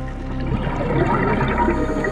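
Scuba diver's exhaled bubbles gurgling out of the regulator, starting about half a second in and lasting until near the end, over background music with steady held tones.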